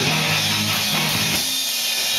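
Live rock band playing loudly: electric guitars and bass over drums and cymbals, the low notes dropping out briefly about two-thirds of the way through.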